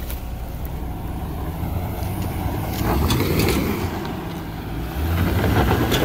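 Hummer H3 engine under load, crawling up a steep dirt and rock climb. It swells twice, about three seconds in and again near the end.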